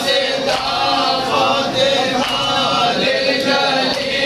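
A group of men chanting a mourning lament together, many voices sustaining long, wavering notes, with a few brief knocks.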